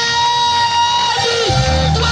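Live gospel music from an amplified stage band: a lead line holding long notes, with a deep bass line coming in about one and a half seconds in.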